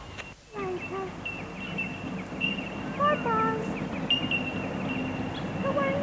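Bell miners (bellbirds) calling: a constant chorus of short, repeated high ringing notes at one pitch.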